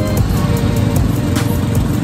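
Motorcycle engine of a passenger tricycle running in a steady, fluttering rumble, heard under background music with a drum hit about a second and a half in.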